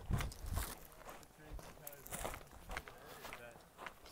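Footsteps of a hiker walking on a rocky dirt trail, irregular steps about twice a second.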